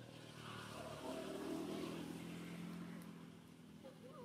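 A motor vehicle's engine passing by: a steady low hum that swells about a second in and fades toward the end.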